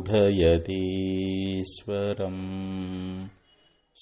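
A man chanting a Sanskrit devotional invocation in long, drawn-out held notes, with short breaks between phrases; the chanting stops about three quarters of the way through.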